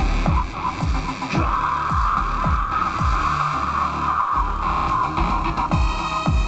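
Loud live electronic music through a club PA: a steady beat of deep kick drums, and from about a second and a half in, a harsh hissing synth noise over it that cuts off near the end, where a pitched synth tone comes in.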